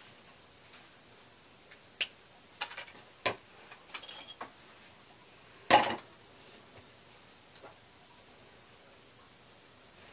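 Scattered light knocks and clicks of craft tools handled on a table, a water brush set down and a paintbrush picked up, with the loudest, slightly longer knock just before six seconds in.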